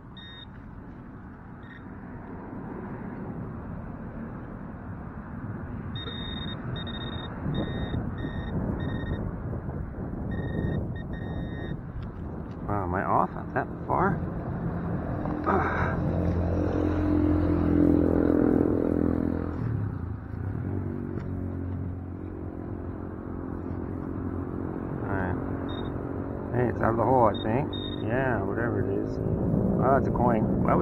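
Metal detector pinpointer beeping in short pulses, about two a second, while soil and roots are scraped and pulled from the hole by hand; the beeping stops for a while and returns near the end. A car drives past, loudest about two thirds of the way in.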